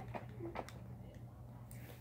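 A few faint clicks and rustles of small items being handled and taken out of a bag, over a steady low hum.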